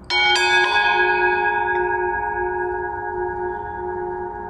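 Consecration bell struck a few times in quick succession just after the start, then ringing on with long, slowly fading, wavering tones. It marks the elevation of the consecrated host at Mass.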